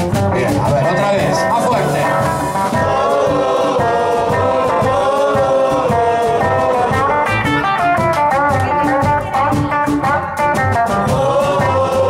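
Live blues band playing: a hollow-body electric guitar, a plucked upright double bass and drums with cymbals, in a steady groove.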